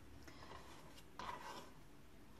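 Nearly quiet room, with one faint, short rustle about a second in as raw potato slices are handled on a wooden cutting board.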